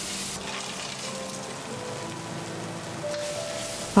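Hot oil sizzling steadily in a wok as soaked dried chillies and Sichuan peppercorns are stir-fried over high heat, their water being cooked off. Faint sustained music notes sound underneath.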